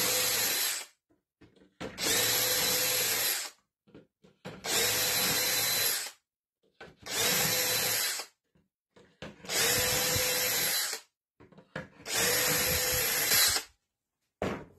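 Cordless DeWalt drill boring shelf-pin holes into OSB through a Kreg shelf pin jig, each hole cut to a set depth by the bit's depth stop. One burst of drilling ends under a second in, then five more follow, each about a second and a half long with a steady motor whine, separated by short pauses as the bit moves to the next hole.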